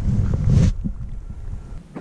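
Wind buffeting the microphone, a low rumble that stops abruptly under a second in, leaving quiet outdoor background.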